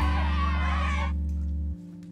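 Short cartoon theme jingle ending on a held low chord, with a wavering high line over it that stops about halfway. The music cuts off shortly before the end.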